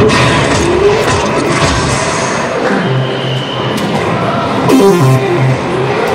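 Electronic soft-tip dart machine playing its music and sound effects, with gliding electronic tones and short pitched phrases, over crowd noise in a large hall.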